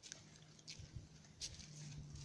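Faint footsteps on a dry woodland path, a soft crunch about every two-thirds of a second, with a faint steady low hum underneath.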